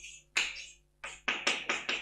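Chalk tapping and striking on a blackboard as words are written: one stroke about a third of a second in, then a quick run of about six taps in the second half.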